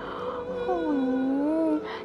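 A woman's drawn-out, sing-song "oy" of delight, one long cry whose pitch dips and then rises again.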